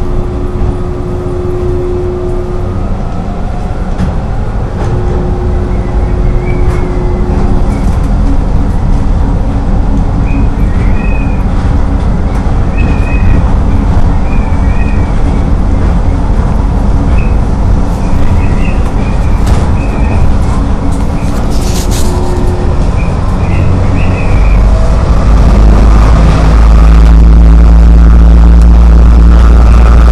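Rubber-tyred automated people-mover car (O'Hare's Matra VAL 256 tram) running along its guideway, heard from inside the front car: a steady low rumble, with short high squeaks through the middle as it rounds a curve. Near the end the rumble grows louder and deeper as the train runs into an underpass.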